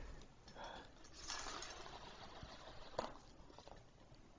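Faint rolling of plastic balls in a plastic cat ball-track toy as a cat bats at them, with one light click about three seconds in.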